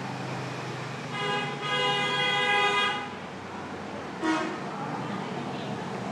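A vehicle horn honking, one steady held tone lasting about two seconds, then a brief second sound about a second later, over a steady hum of traffic.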